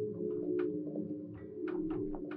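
Live experimental electronic noise music: a steady low drone of a few held tones, with irregular sharp clicks and crackles scattered over it, several a second.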